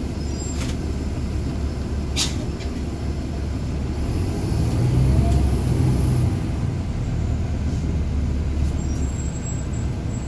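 Heard from inside the cabin, a city transit bus's Caterpillar C13 diesel runs with a steady low rumble as the bus moves along. The engine note swells for a couple of seconds around the middle, with a short rising whine. Two brief sharp clicks come in the first few seconds.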